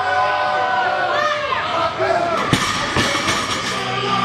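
Spectators shouting during a heavy deadlift, then the loaded barbell is dropped to the floor about two and a half seconds in: a heavy thud followed by a second impact half a second later as it bounces.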